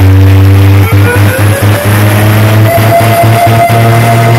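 Very loud electronic dance music played through a wall of stacked DJ speaker cabinets (four bass, four mid) under sound test. A heavy bass line stutters in quick pulses from about a second in, and a higher synth tone glides up and holds over it.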